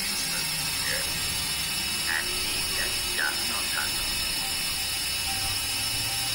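Dense electronic synthesizer noise drone with a fast, fine crackling texture and short chirping blips scattered through it.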